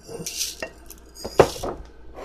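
Dyed dry rice poured from a glass jar into a plastic bowl: a short rush of grains, then a couple of sharp knocks of the glass against the bowl, the loudest about one and a half seconds in.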